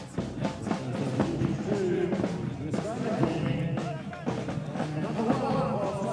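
Marching band playing: brass instruments with a steady run of drum beats.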